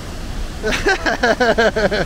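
Steady rush of a waterfall, with a person breaking into quick, repeated laughter from under a second in.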